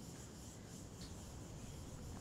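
Faint, steady background ambience in a quiet room, with one faint short high chirp about a second in.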